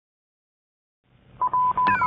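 Silence, then a low hum fades in about a second in, and a high beep of one steady pitch keys on and off in short and long pulses, like a radio signal sound effect. A falling whistle starts just at the end.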